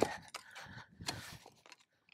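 A spade cutting into compacted field soil, with a short gritty scrape-and-crunch about a second in.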